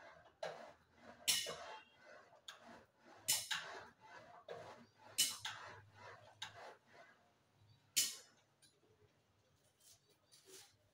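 A person's forceful exhalations: sharp, hissing puffs about every two seconds with fainter breaths between them, the last strong one about eight seconds in.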